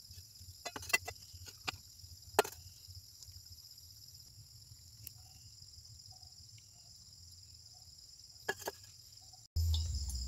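Crickets chirring steadily in the background, with a few sharp clinks of glassware in the first couple of seconds and again near the end as a glass beaker is handled and poured into a filter funnel.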